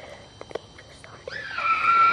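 A child's high-pitched cry, starting about a second in with a short upward slide and then held on one steady pitch. Before it there are a few faint clicks.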